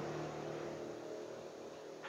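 A passing motor vehicle's engine, its pitch dropping just before and then fading steadily as it moves away.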